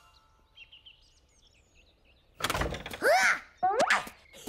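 Faint birdsong, then a wooden door thuds open about two and a half seconds in, followed by a cartoon bunny's high, wordless voice calls that swoop up and down.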